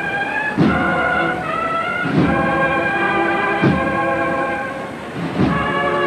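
Band playing a Holy Week processional march: held brass chords over a drum stroke about every second and a half.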